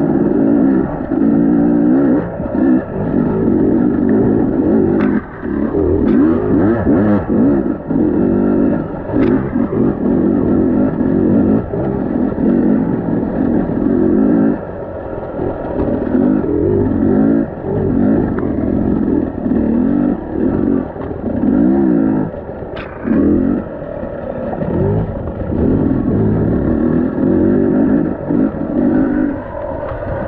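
Dirt bike engine on rough trail, the revs rising and easing off over and over every second or two. A few sharp knocks come through the engine sound.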